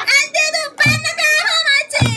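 A group of students singing together, with a low thud about once a second keeping the beat.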